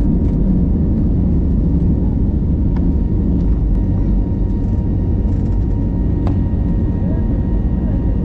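Jet airliner's turbofan engines at takeoff thrust as the plane lifts off and climbs, heard inside the cabin by the window: a loud, steady low rumble with a faint steady whine over it.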